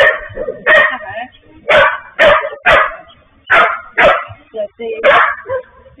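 Dog barking repeatedly, about eight short, sharp barks with uneven gaps, at a drone flying over the yard.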